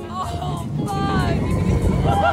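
Roller coaster riders laughing and whooping aboard Big Thunder Mountain Railroad, a mine-train coaster, over the low rumble of the train running on its track, which builds toward the end.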